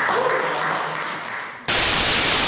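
A small crowd applauding, dying away. About a second and a half in, a sudden loud burst of static hiss cuts in and holds at a flat level, far louder than the clapping.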